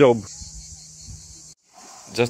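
A steady, high-pitched insect chorus that cuts off abruptly about one and a half seconds in, leaving a moment of silence.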